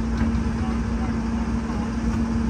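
A Case tracked excavator's diesel engine running steadily, a constant hum over a low rumble.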